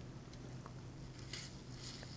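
Faint, soft squishing of rubber-gloved hands pulling apart a tender, sauced barbecue rib, over a steady low hum.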